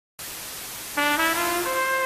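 Static-like hiss, then about a second in a brass-sounding melody starts over it and climbs note by note: the opening of a show's theme music.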